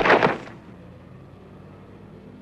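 A man knocked to the ground by a kick in a film fight: one short, loud burst about half a second long at the start, then only a faint steady hiss and low hum from the old soundtrack.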